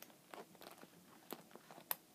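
Faint handling noise from a black patent leather tote: a few small clicks and crackles as the metal zipper pull and stiff leather are fingered, the sharpest click near the end.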